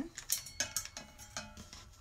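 Gold wired ribbon handled and pressed flat by fingers on a tabletop: a few short crinkly clicks and rustles, scattered and uneven.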